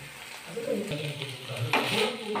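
Mixed vegetables frying in a wok, sizzling as a wooden spatula stirs and scrapes them, the stirring growing louder near the end.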